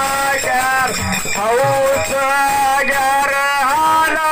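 A man singing a Kannada dollina pada folk song into a microphone, in long held notes that bend and glide in pitch between phrases, with a few low thuds underneath.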